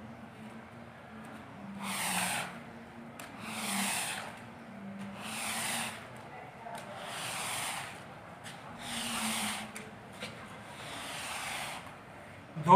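A long-handled rubber-bladed floor wiper (squeegee) swished across a wet, soapy carpet in about six strokes, each about a second long. It is pushing the detergent suds and water out of the carpet after scrubbing.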